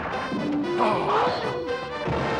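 Added fight sound effects: crashing hits over dramatic background music as a blow lands and a man is knocked to the ground.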